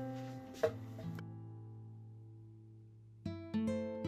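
Background music on acoustic guitar: plucked notes and chords, with one chord left ringing and fading through the middle before new notes come in near the end.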